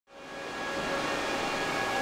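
Steady whir of cooling fans on crypto-mining hardware, an even rushing noise with several faint steady tones in it, fading in from silence over the first second.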